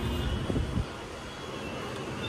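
Low outdoor rumble of wind and distant city traffic heard from a high window. It is heavier for the first second, then drops to a softer steady rumble.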